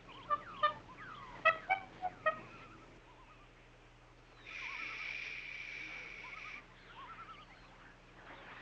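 Outdoor wildlife ambience: a scatter of short bird-like calls, some gliding, through the first couple of seconds. Then a steady hissing buzz lasts about two seconds past the middle.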